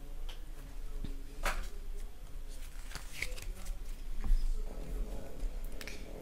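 Pokémon trading cards handled in the hands as a freshly opened pack is sorted: cards sliding and flicking against each other, with a couple of sharper rustles.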